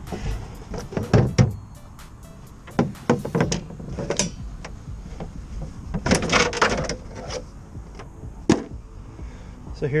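Knocks and clunks of an Airstream Basecamp's black plastic front propane tank cover as its shell and inner lid are opened, with a sharp click about eight and a half seconds in. Background music runs underneath.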